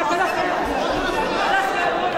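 A fight crowd's many voices calling out over one another, a steady mass of overlapping shouts and chatter.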